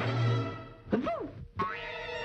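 Orchestral cartoon score: a low held note, then about a second in a quick comic sound effect that swoops up and back down in pitch, followed by another short hit and held notes.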